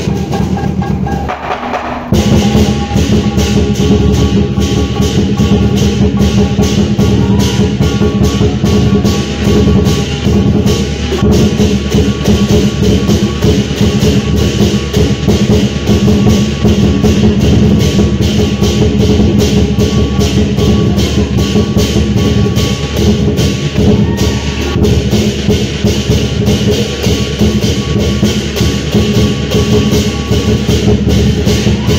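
Fast, steady percussion music with drum beats, the accompaniment to a Chinese dragon dance. It dips briefly near the start and comes back in full about two seconds in.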